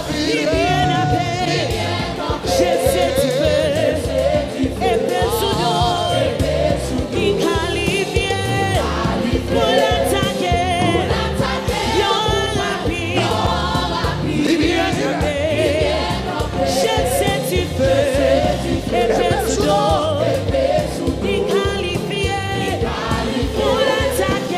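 Live gospel choir singing with vibrato, backed by a band with drum kit and cymbal hits.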